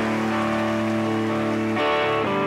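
Live band's electric guitars ringing out a sustained chord, changing to a new chord near the end.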